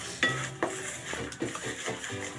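Wooden spatula stirring and scraping a thick spice paste in a nonstick kadai, knocking against the pan several times. The first knock, about a quarter second in, is the sharpest and rings briefly.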